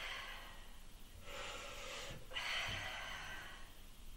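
A woman breathing hard from exertion, with three long breaths in and out; the second and third come back to back in the second half.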